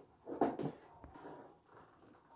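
A short knock about half a second in, then faint rustling, as a child's fabric backpack is handled and opened.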